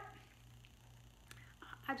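Quiet room tone with a steady low hum. A few faint ticks come near the end.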